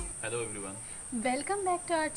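Steady high-pitched drone of insects, with a woman's voice starting to speak over it shortly after the start.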